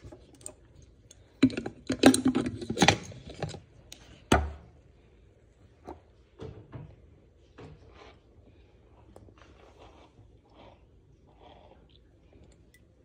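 Close handling noise: fabric rubbing and small knocks right at the microphone, loudest in a burst about two seconds in, with one sharp knock about four seconds in, then only faint scattered clicks.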